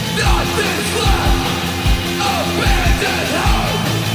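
Oi! punk song: shouted vocals over a full rock band, with a steady, driving kick drum.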